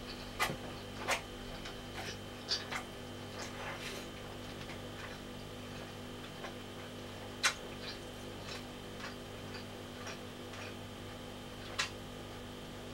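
Eating sounds: scattered short mouth clicks and smacks with chopstick taps on a plastic food container, the sharpest about half a second in, at about a second, in the middle and just before the end, over a steady electrical hum.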